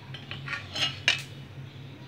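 Metal tongs clinking against a steel plate as a cooked spring-roll wrapper is set down: a few light metallic clicks, the sharpest about a second in, over a steady low hum.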